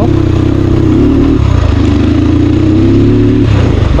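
Crossfire dirt bike engine running steadily at low speed on a rough gravel track, with the engine note dipping briefly twice as the throttle eases.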